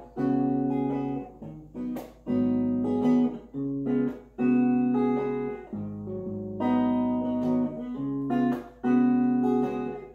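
Clean-toned electric guitar playing a slow intro of ringing chords through a small amp. Each chord sustains for about a second, with short breaks between.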